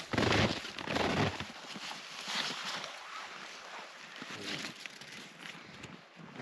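Wind buffeting the camera's microphone, strongest for the first second and a half, then easing to a softer, uneven rustle.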